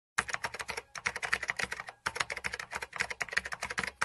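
Rapid key-typing clicks, about a dozen a second, stopping briefly twice, about one and two seconds in: a typing sound effect laid under text that is typed out on screen.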